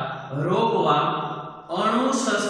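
Only speech: a man's voice lecturing in long, drawn-out syllables, with a brief pause near the end.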